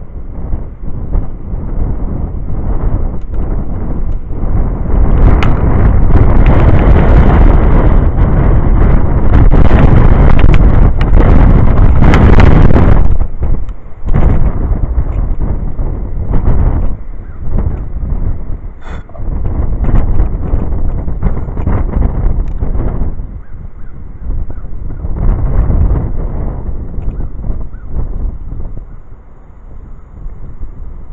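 Wind buffeting the microphone in gusts: a deep, rough rumble that swells to its strongest for several seconds in the first half, drops away abruptly, then returns in weaker surges.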